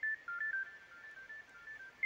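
Smartphone ringtone for an incoming call: a simple tune of short high notes stepping up and down.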